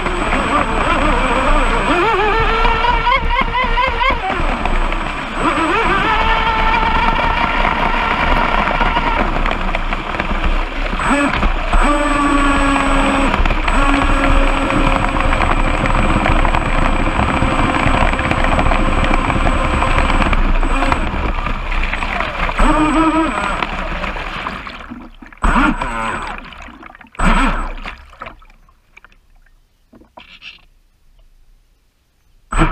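Pro Boat Blackjack 29 RC speedboat's electric motor whining, its pitch rising and falling with the throttle, over water rushing against the hull. Near the end the motor eases off and the sound fades, broken by two short knocks.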